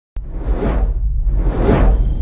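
Two whoosh sound effects of an animated logo intro, each swelling up and fading away, about a second apart, over a steady deep rumble that starts abruptly at the very beginning.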